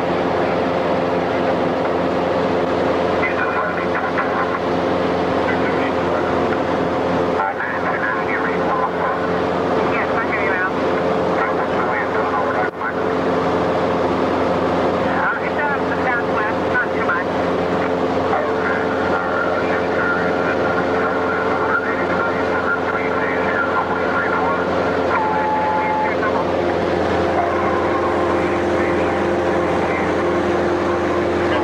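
Steady drone of a light single-engine plane's piston engine and propeller, heard from inside the cabin in flight.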